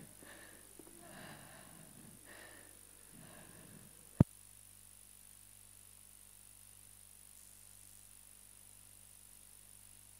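Very quiet: a faint, indistinct sound for the first few seconds, then a single sharp click about four seconds in, followed by near silence.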